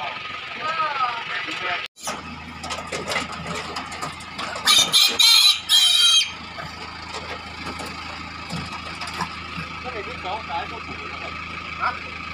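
A crossbred piglet squealing loudly in three short bursts, about halfway through, as it is lifted by a hind leg into a truck-bed cage, over the steady hum of an idling pickup engine.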